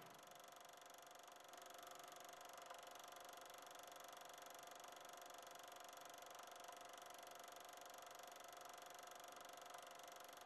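Near silence: a faint, steady hiss and hum.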